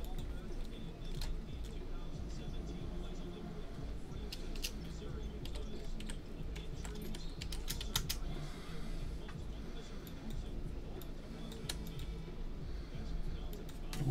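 Computer keyboard typing: irregular, scattered key clicks over a low steady background hum.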